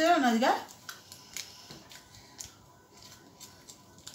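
Foil chocolate wrapper crinkling as it is handled and folded, giving a few faint, sharp crackles after a woman's voice at the start.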